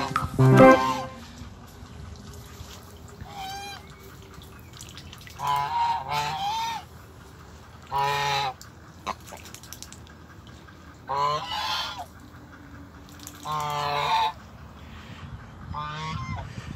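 Domestic geese honking: a run of short, repeated honks, one every two to three seconds, some in quick doubles.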